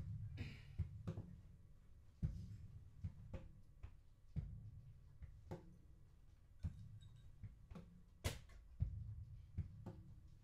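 Percussive rhythm tapped and slapped on the body of an acoustic guitar, fed into a loop pedal: a low thump about every two seconds with lighter knocks in between, repeating evenly.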